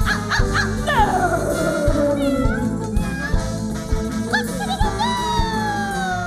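Live calypso band playing with a steady drum beat, over which come long sliding notes that fall in pitch, about a second in and again near the end.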